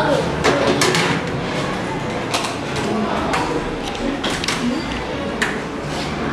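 Small cups and saucers clinking on a metal serving tray as it is set on a table and the cups are handed out, a series of separate sharp clinks, over the chatter of children.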